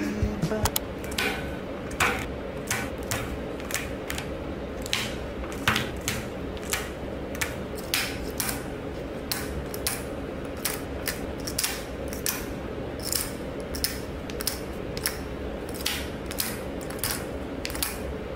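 Aluminium Nespresso coffee capsules slid one after another into the chrome wire rails of a capsule holder tower, each landing with a sharp metallic click, about one or two a second.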